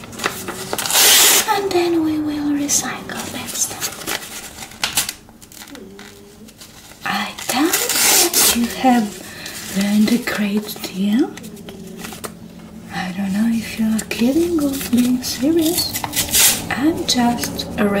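Sheets of paper torn by hand, with two long rips about a second in and about eight seconds in, and smaller tearing and crinkling in between. A woman's voice hums or murmurs without clear words through the second half.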